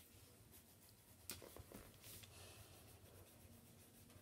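Faint scratching of coloured pencils on sketchbook paper, with a light tap about a second in.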